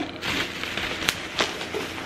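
Green plastic bubble mailer crinkling as it is pulled open by hand, with two sharp clicks a little after a second in.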